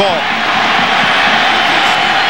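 Steady, loud crowd noise from a packed football stadium crowd, carried on the TV broadcast audio.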